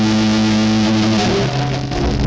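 Music: distorted electric guitar with effects holding sustained chords, the chord changing about a second and a half in.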